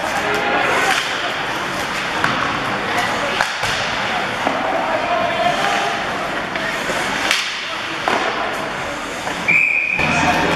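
Rink noise during an ice hockey game: spectators' voices, with scattered sharp clacks of sticks and puck. Near the end a referee's whistle blows one steady, high note, stopping play.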